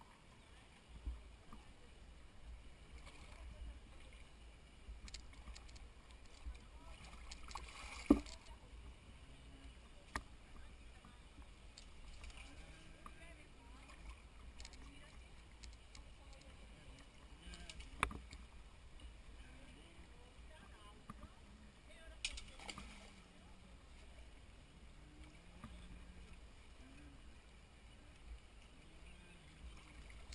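Shallow river running faintly over stones, with occasional splashes of people wading and pushing inflatable canoes through the shallows. A few sharp knocks cut through, the loudest about eight seconds in and another near eighteen seconds.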